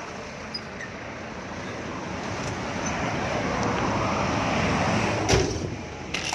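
Vehicle engine and road noise heard from inside the cab as it gets under way, building steadily over several seconds, with a single sharp thump about five seconds in.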